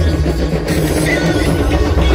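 Music with a heavy, steady bass line.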